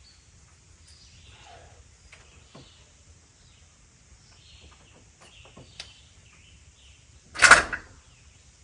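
Faint clicks and small handling noises from working the old distributor loose in a small-block Ford engine bay, then a short, loud burst of noise near the end.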